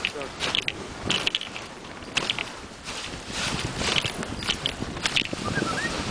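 Wooden dog sled running over packed snow behind a husky team: the runners scrape and hiss, with irregular crunches and knocks.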